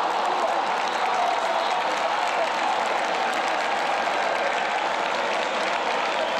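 Football stadium crowd cheering and applauding, a steady wash of noise from the stands.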